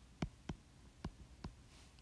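Stylus tip tapping and clicking on a tablet's glass screen while handwriting, a few faint, separate clicks over a low background hum.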